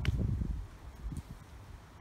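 Wind buffeting the microphone in uneven low gusts, strongest in the first half second and then dying down. Under it runs the steady hum of a hot tub.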